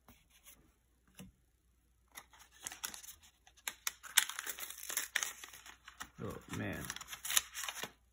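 Wax paper wrapper of a 1972 O-Pee-Chee card pack crinkling and tearing as the last cards, one stuck to the pack's gum, are pulled free: a few faint rustles, then dense crackling from about two seconds in.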